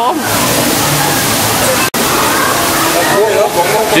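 Steady rushing, splashing water, with a very short break about two seconds in.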